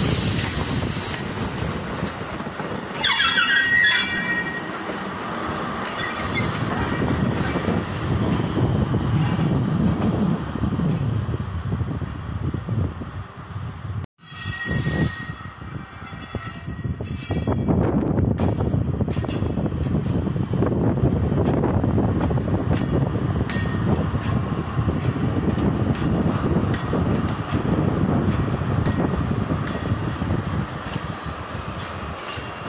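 Freight trains passing close by: Lineas class 75000 diesel locomotives running and wagon wheels rolling on the rails, with a brief high wheel squeal a few seconds in. About halfway the sound cuts out abruptly, and another diesel locomotive's running builds up after it.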